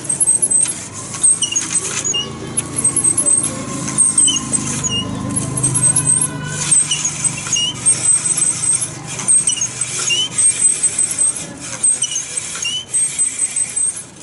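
Cord-pulled grinding wheel sharpening a blade and scissors: the rig squeaks in short high chirps about once a second as the cord is pulled back and forth, over the scrape of steel on the wheel. A low rumble swells in the middle.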